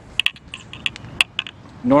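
Irregular light clicks and ticks, about a dozen over two seconds, with no steady sound beneath them.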